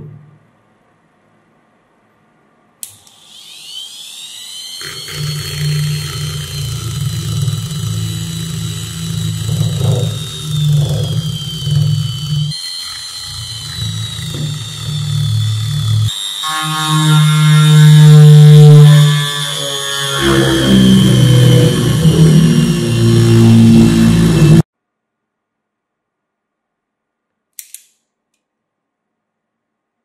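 Handheld rotary tool with a sanding drum running at high speed, a high whine that dips slightly and settles, then grinding against wood from about five seconds in. It stops suddenly about 25 seconds in, followed a few seconds later by one short click.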